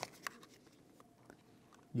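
A few faint, short clicks and handling noises from hands working a camcorder and a coax cable's BNC connector.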